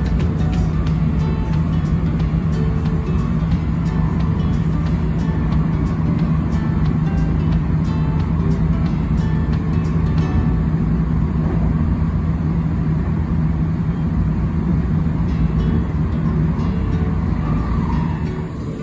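Steady running rumble and hum of an electric commuter train heard from inside the carriage, with a quick run of clicks in the first few seconds and again about halfway. Background music plays underneath.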